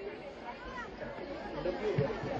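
Faint background chatter of people talking, with no single voice standing out.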